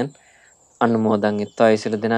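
A Buddhist monk speaking in Sinhala, a sermon delivered in steady speech. He pauses for most of a second near the start, and a faint high chirp sounds during the pause.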